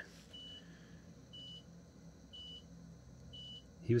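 A faint high electronic beep repeating about once a second, four beeps in all, over a low steady hum.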